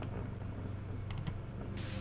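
A few faint clicks over a low steady hum, then a short burst of TV-static hiss near the end as the picture cuts to static.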